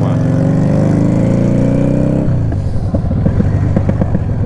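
Yamaha Drag Star 650's 649cc V-twin accelerating, its note rising for about two seconds, then dropping sharply at a gear change. After that it runs lower and uneven, with irregular popping from the exhaust as the revs fall.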